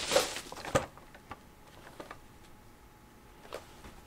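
Boxes and packaging being handled: a few light clicks and rustles, most in the first second, then only occasional soft ticks.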